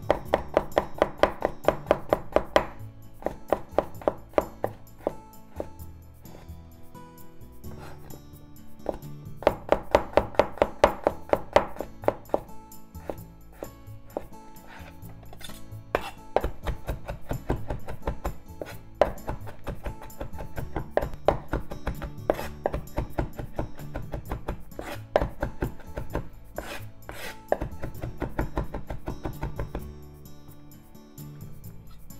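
Kitchen knife chopping garlic on a wooden cutting board: runs of quick sharp taps, about five a second, with short pauses, as the cloves are sliced and then minced. Background music plays underneath.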